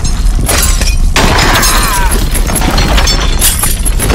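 Loud, dense crashing and shattering over a steady deep rumble: the din of an earthquake, with debris collapsing in a tunnel.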